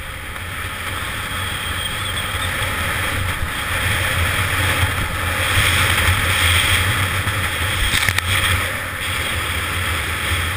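Wind rushing over a GoPro's microphone and skis hissing over packed snow on a fast downhill run, a low buffeting rumble under a broad hiss that builds as speed picks up and eases near the end. A few sharp scrapes come about eight seconds in.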